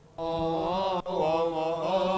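A solo male voice chanting a slow, melismatic Coptic church hymn, holding long notes with ornamented turns. The voice comes in just after the start and breaks briefly about a second in.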